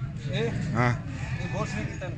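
A goat bleats once, briefly, with a wavering call about a second in, over men's voices.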